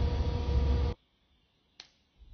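Steady low traffic rumble from the road outside the terminal, cut off abruptly about a second in, then quiet with a single sharp click near the end.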